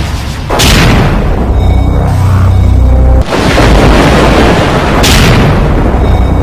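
Loud film-trailer music with heavy booming hits: sudden, full-range impacts about half a second in and just after three seconds, and a bright crashing burst near five seconds, over a deep, rumbling bass.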